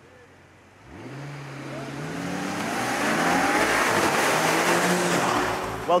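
A car accelerating hard. Its engine note climbs in pitch and then holds, under a swelling rush of tyre and road noise that builds over several seconds and peaks in the second half.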